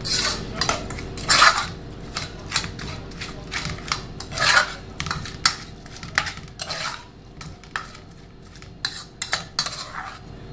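Large metal spoon scraping and clinking against a metal saucepan as minced chicken salad is tossed and mixed, in irregular strokes that are loudest in the first five seconds.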